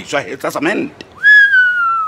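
A person whistling one long, clear note that swoops up quickly and then slides slowly down, following a moment of speech.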